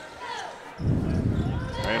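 A basketball being dribbled on a hardwood court amid arena noise, getting louder about a second in.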